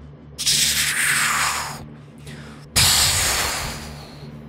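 Two bursts of loud hissing blast noise, a cannon-shot sound effect: the first rises about half a second in and fades over about a second, the second hits suddenly near three seconds and dies away.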